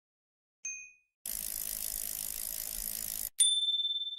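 A short bell-like ding, then about two seconds of steady hiss that cuts off suddenly, then a sharp, brighter ding whose single tone rings on and fades.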